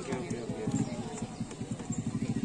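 A small engine idling, a rapid, even low pulsing of about a dozen beats a second, with crowd voices underneath.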